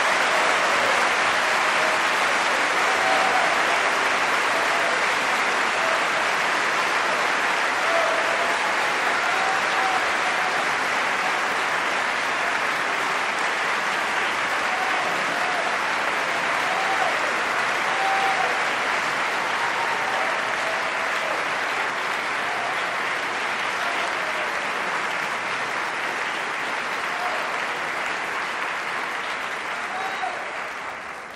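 Opera house audience applauding steadily, with a few scattered voices calling out, slowly tapering off.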